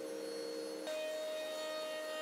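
i2R CNC router's motors whining steadily with a pure tone that steps up in pitch about a second in.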